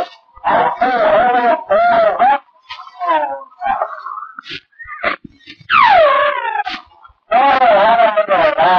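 A man's voice on an 1885 Volta Laboratory experimental sound recording, wavering in pitch. It runs in bursts of speech, with a long falling "ohhhh" about six seconds in and the spoken word "Mary" near the end.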